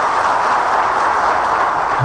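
Audience applauding steadily, a dense even clatter of clapping that cuts off suddenly at the end.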